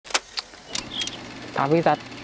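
A few short, sharp clicks in the first second, then a man starts speaking.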